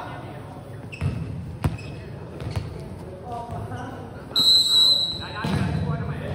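A referee's whistle blows once, a single steady shrill note lasting under a second, about four and a half seconds in. Before it come a couple of sharp thuds of a volleyball bounced on the court floor, with voices around.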